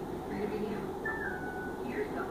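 Indistinct background voices, with a single short whistle-like note about halfway through that drops slightly in pitch and holds.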